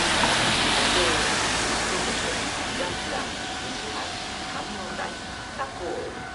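Japanese station platform announcement over a rushing hiss that is loudest in the first second and slowly fades.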